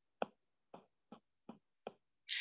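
Five light taps of a stylus on a tablet's glass screen, evenly spaced about 0.4 s apart, tapping the undo button to remove red annotations one at a time.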